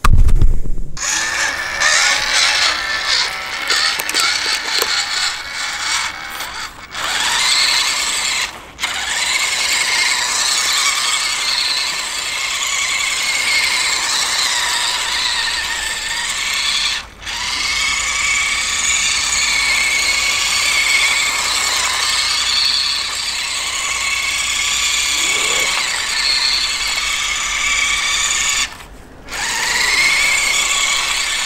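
WPL B36-3 RC truck's small electric motor and gearbox whining steadily under throttle as it spins its wheels on ice, the pitch wavering slightly with speed. The whine drops out briefly several times.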